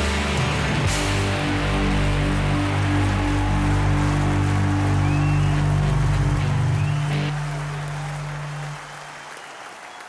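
The end of a rock song: the band's final chord is held, with a crash about a second in, then rings out and fades away over the last few seconds.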